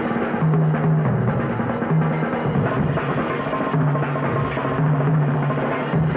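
Jazz drum kits played hard and fast in a drum battle. Dense rolls run around the snare and toms over the bass drum, with ringing tom notes that come and go.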